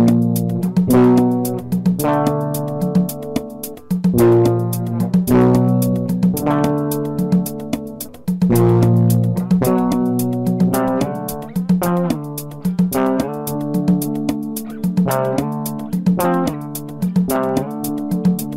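Mellow easy-listening instrumental music: a guitar picking a melody over lower sustained notes, with a steady light ticking beat.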